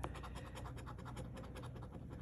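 A coin scraping the latex coating off a scratch-off lottery ticket in rapid back-and-forth strokes, several a second.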